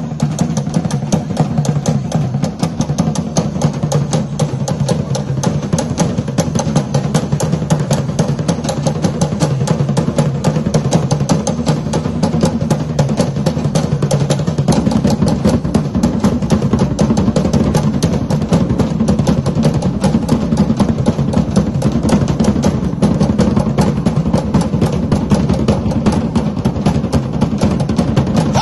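Fast, unbroken drumming from a Polynesian percussion group accompanying Tahitian dance, a rapid steady beat that gets a little louder about halfway through.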